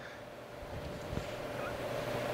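Quiet workroom room tone with a faint steady hum, and one light soft knock about a second in.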